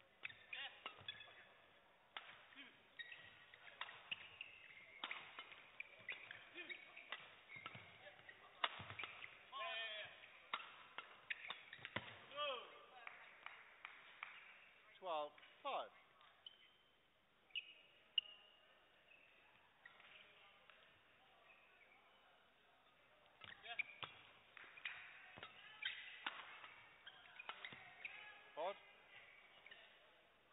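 Badminton doubles rallies: rackets striking the shuttlecock in quick, sharp hits, with short squeaks from players' shoes on the court floor. A quieter pause between points near the middle, then a new rally near the end.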